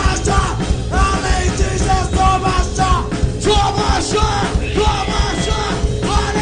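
Hardcore punk band playing live: fast distorted guitars, bass and drums, with shouted vocals over the top.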